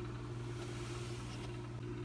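Room tone: a steady low hum with a faint hiss underneath.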